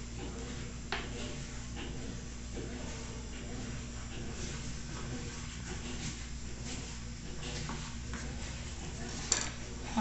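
A few light clicks and taps of a knife and fingers working floured dough on a countertop, the clearest about a second in, over a steady low hum from a washing machine running in the background.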